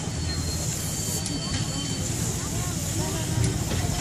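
SNCF 140 C 38 steam locomotive, a 2-8-0, rolling slowly at low speed: a steady low rumble with a faint high hiss over it, under crowd chatter.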